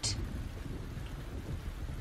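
A pause between lines of dialogue: steady low rumbling background noise with a faint hiss, no speech.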